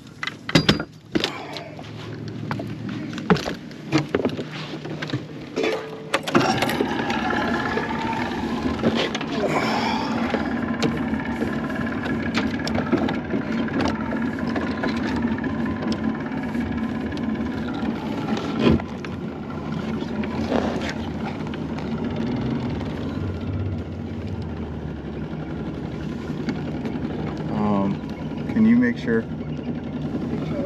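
Boat's outboard motor running steadily, starting about six seconds in, after a few knocks and thumps on the boat's deck.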